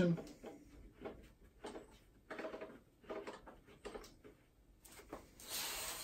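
Faint, scattered clicks and light knocks as hands handle and adjust the stock plastic windscreen of a BMW R1200GS Adventure.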